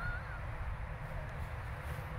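Outdoor ambience: a low, fluctuating rumble of wind on the microphone, with one faint, short whistled call near the start.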